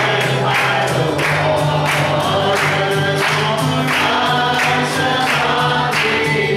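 Live gospel song: singing over a strummed acoustic guitar, with a steady beat of sharp strikes about three times a second.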